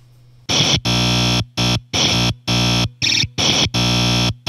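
A circuit-bent Executor effects-keychain toy, rebuilt as a drum machine, playing a harsh, buzzing sound-effect sample retriggered in a stuttering rhythm. About half a second in it starts as loud blocks of sound roughly a third of a second long, cut by short silences.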